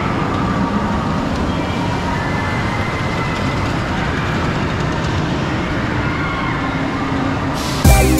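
Steady outdoor background noise with a strong low rumble and faint wavering tones, changing abruptly near the end.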